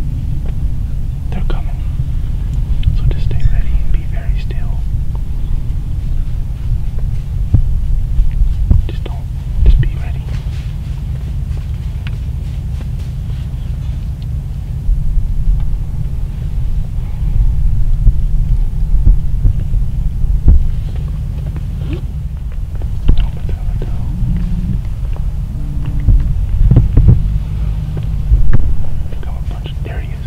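A steady low rumble that swells and throbs, with faint hushed whispering over it.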